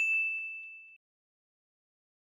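A single bright, bell-like ding, an editing sound effect, struck once and fading away within about a second.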